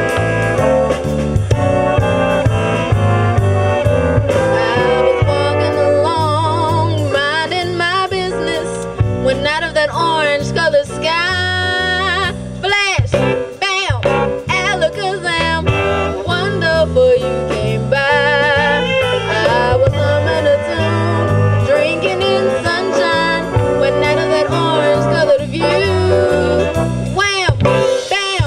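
Live jazz ensemble playing an upbeat swing tune, with a vocalist singing over the band after a few seconds of instrumental lead-in.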